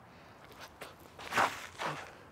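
Soft footsteps: a few light steps, with two louder scuffing steps about one and a half seconds in and near the end, as in a disc golfer's run-up to a throw.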